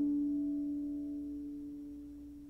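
Harp notes ringing on and slowly fading, with no new strings plucked. One low note is the strongest.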